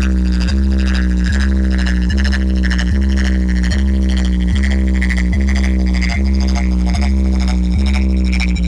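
Electronic DJ music played loud through a large stacked DJ speaker box system. A deep, sustained bass drone sits under a steady beat that falls about every 0.8 seconds.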